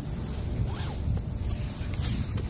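Rustling and rubbing on the phone's microphone as it is handled close to the dogs' fur and clothing, over a low, steady rumble.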